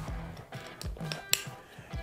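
Soft background music, with one sharp click a little over a second in as a plastic sling-strap clip is snapped onto the pouch's anchor point.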